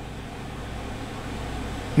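Steady background noise: a low hum under an even hiss, with no distinct events.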